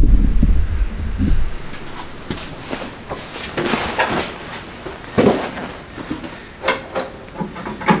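A loud low rumble of the camera being handled, then rustling clothing and scattered knocks and creaks as a man climbs onto the seat of a Ford AA doodlebug. There are a few sharper thumps near the end.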